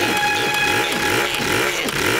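Cartoon chainsaw engine sputtering in repeated surges, about three a second, not running smoothly: the saw is acting up.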